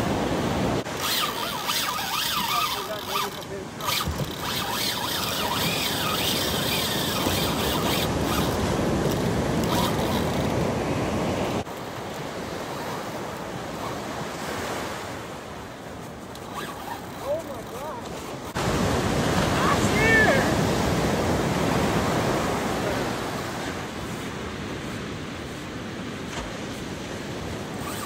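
Surf breaking and washing up the beach, with wind on the microphone.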